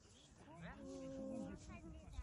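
A faint voice making a drawn-out vocal sound, with one vowel held steady for about half a second in the middle.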